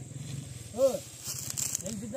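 A voice giving one short call whose pitch rises and falls, about a second in, over a low, fast, steady pulsing throb.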